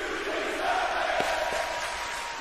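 A crowd cheering and shouting, a steady roar of many voices with a thin held whistle-like tone through most of it.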